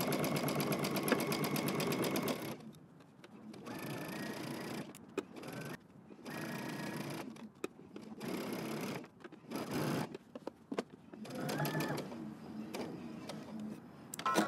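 Home sewing machine topstitching a knit dress with a long 3.5 stitch. It runs steadily for about two and a half seconds, then in several shorter bursts with brief pauses between.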